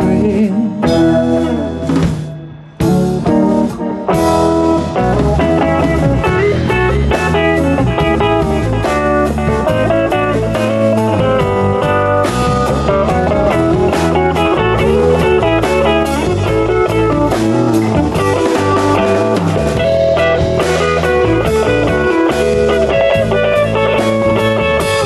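Live band playing an instrumental passage on electric guitars, bass and drum kit, with no singing. The band drops away briefly about two to three seconds in, then comes back in full.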